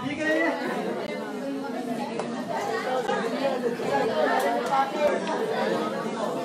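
Chatter from a room full of people talking at once, with no single voice clear.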